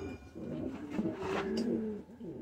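Pigeon cooing: a run of low, wavering coos.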